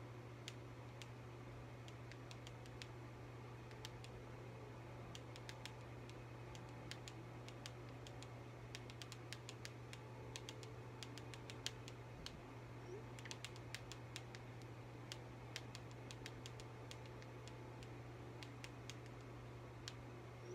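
Faint, irregular taps of typing on a smartphone touchscreen, several a second at times, over a steady low hum.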